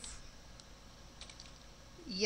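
A few faint keystrokes on a computer keyboard as code is typed.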